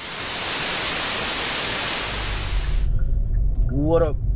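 TV-static white-noise transition effect: a steady loud hiss that cuts off abruptly about three seconds in. A low car-cabin rumble comes up under it and is left after it.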